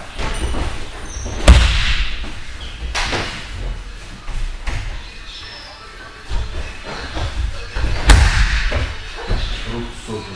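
Bodies thrown down onto padded training mats during a throwing drill: two heavy thuds about a second and a half in and about eight seconds in, with a lighter one near three seconds and smaller knocks between, echoing in a large hall.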